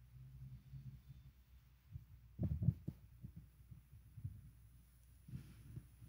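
A faint low hum, then a cluster of dull low thumps about two and a half seconds in, followed by scattered softer knocks.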